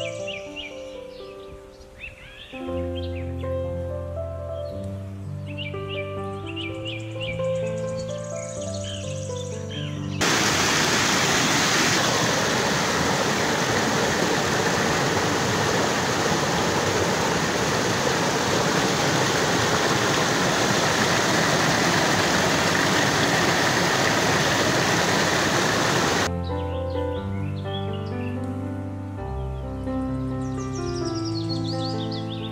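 Background music of slow, held notes with high chirps over it. About ten seconds in, the loud, even rush of a rocky mountain stream cascading over boulders takes over. Near the end it cuts off abruptly and the music returns.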